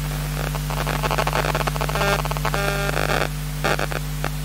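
Steady electrical mains hum in the sound system. Over it, from about half a second in to near the end, comes irregular crackling and clicking noise with a few short pitched sounds.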